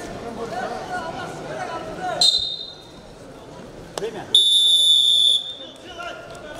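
Wrestling arena's electronic time buzzer sounding twice, signalling the end of wrestling time: a short blip about two seconds in, then a loud, steady, high-pitched tone lasting about a second. Crowd chatter fills the first two seconds.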